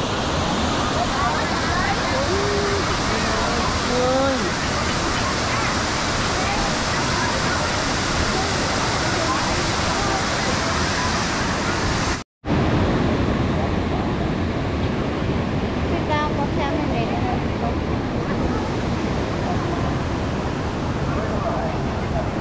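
Steady roar of a waterfall cascading over rocks into a pool, with people talking faintly over it. The sound breaks off for an instant about twelve seconds in and resumes slightly duller.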